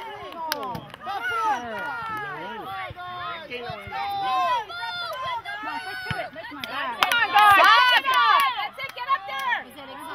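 Several voices shouting and calling over one another: players and sideline spectators at a youth soccer game. The shouts grow loudest about seven to eight seconds in.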